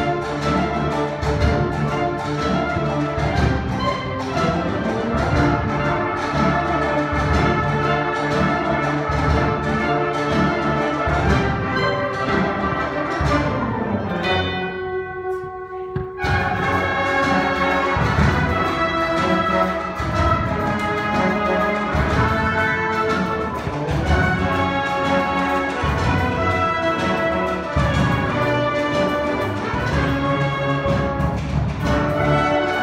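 High school symphonic band playing, with brass and low drums carrying the piece. About halfway through, the band thins to a few held notes for a couple of seconds, then the full band comes back in.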